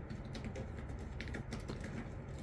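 A cat licking and grooming its fur, its tongue making soft, irregular clicking sounds, some in quick twos and threes.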